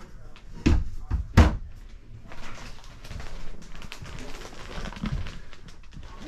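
Overhead cabinet door in a travel trailer being opened and shut, giving two sharp knocks about a second apart, the second louder.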